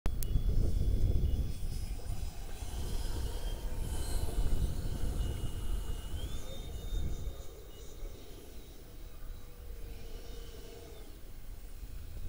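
Twin 64mm electric ducted fans of an Arrows F15 model jet whining at a steady high pitch that steps up about six seconds in and fades out near the end. Heavy low rumble lies under it, loudest in the first half.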